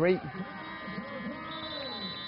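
Live court sound from a basketball game: voices shouting and calling out over a steady arena background, with thin high tones held through the second half.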